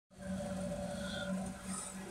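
Low steady hum with faint background noise: room tone.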